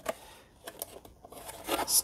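Thin cardboard packaging being handled by hand: a few light clicks and taps, then a short scraping rustle near the end.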